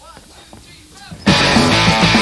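A punk rock band starts abruptly at full volume about a second in, with distorted electric guitars, bass and drums, after a short near-quiet gap.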